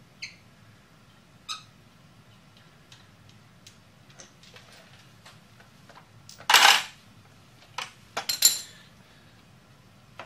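Metal tools and parts clinking while a motorcycle's front brake caliper is worked loose and lifted off the fork: scattered light clinks, a louder half-second rasp about six and a half seconds in, and a cluster of ringing metal clanks around eight seconds in.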